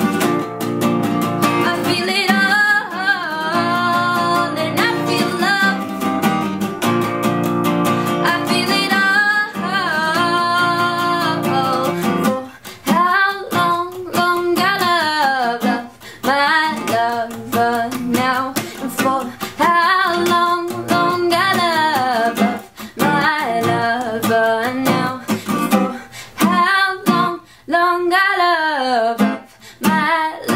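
A woman singing a pop song while strumming a steel-string acoustic guitar fitted with a capo. The strumming is steady for the first twelve seconds or so, then the accompaniment turns sparser, with brief gaps between sung phrases.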